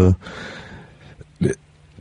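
A pause in a man's speech over a phone line: faint, fading line hiss and a low hum, broken about one and a half seconds in by one short, clipped vocal sound.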